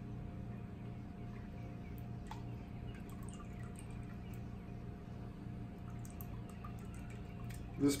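Hot melted beeswax trickling and dripping from a squeezed muslin filter bag into a plastic tub, over a steady low hum.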